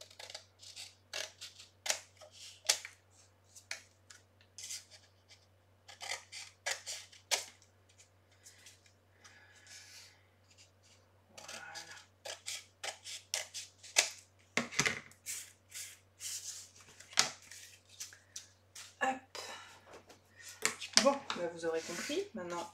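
Scissors snipping through decorative paper in runs of short cuts with pauses between, trimming the excess paper from the corners of a paper-covered cardboard frame.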